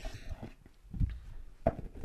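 Oracle card decks being handled on a wooden table: a few soft knocks about a second in and again near the end.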